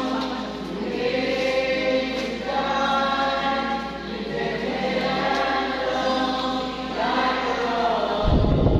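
Choir singing a slow sacred hymn, with long held notes.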